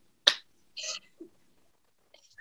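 A single sharp hand clap about a quarter second in, followed by a soft breathy laugh through the nose or mouth.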